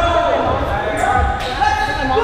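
Players' voices talking over one another in a reverberant gymnasium, with a couple of dull thuds of rubber dodgeballs bouncing on the hardwood floor.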